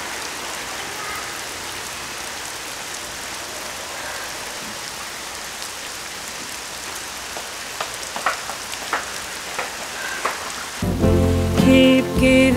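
Steady rain falling, with a few light footsteps about eight to ten seconds in. Music comes in near the end, louder than the rain.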